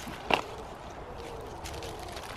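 Loose soil dropping off the roots of a freshly pulled onion as it is lifted and shaken, with one brief sharp tick about a third of a second in and a faint steady hum behind.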